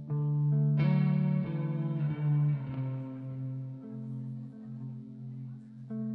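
Electric guitar through effects playing a slow instrumental passage of held notes, with a chord struck about a second in that rings out and fades over the next few seconds.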